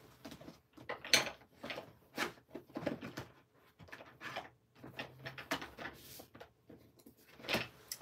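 Rummaging through craft supplies: a string of separate knocks, clicks and rustles as things are moved about and a drawer or box is handled, the loudest knock about a second in.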